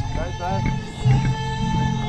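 Music with long held notes over a low, steady pulse, with a man shouting "Let's go!" just as it starts.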